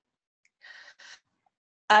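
Two short, faint in-breaths from a woman, about half a second apart.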